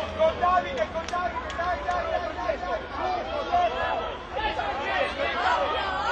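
Many children's voices shouting and calling over one another at once, a continuous high-pitched babble from young rugby players.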